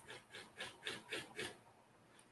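Faint, quick keyboard typing: a run of short taps at about five a second that stops about a second and a half in.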